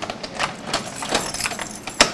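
A bunch of keys jangling, with irregular metallic clicks as a key is worked into the apartment door's lock.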